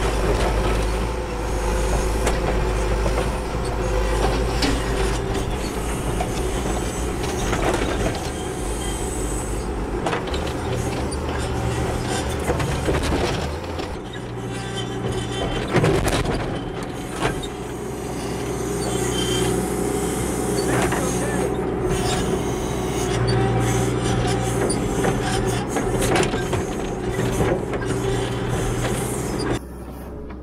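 Turbo diesel engine of a John Deere 310SE backhoe loader running under working load, its note shifting as the backhoe digs and pries at a large tree stump. A few sharp knocks come through, the loudest about halfway through.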